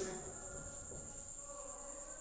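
Whiteboard marker writing a word on a whiteboard: faint, thin tones that come and go with the strokes.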